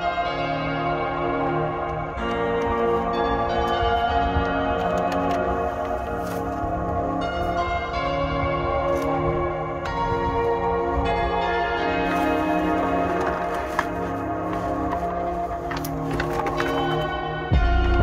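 Background music: a slow, ambient track of sustained, bell-like chords that change every couple of seconds, with a low rumble coming in near the end.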